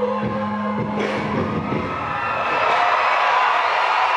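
Music from the stage sound system, with a held note, fades out, and about two seconds in a large crowd starts cheering.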